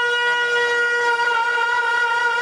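A man's voice holding one long, high, steady note into a microphone: a drawn-out cry in a zakir's sung recitation.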